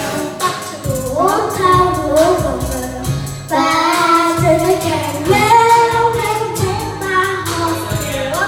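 A child singing karaoke into a handheld microphone over a pop backing track with a steady beat.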